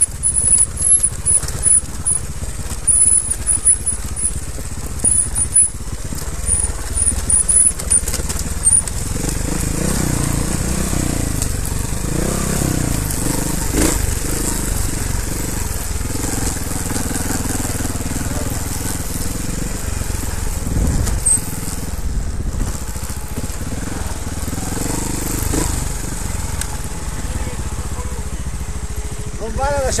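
Trials motorcycle engine running on a rocky forest track, its revs rising and falling from about ten seconds in, over a steady low rumble of the bike and its wheels on the ground. A run of short high squeaks and sudden jolts fills the first eight seconds.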